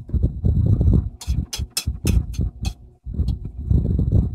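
Crunching bites of crisp unripe green mango, a quick series of sharp crunches in the middle, over low thumps and rustling of hands and plate close to the microphone.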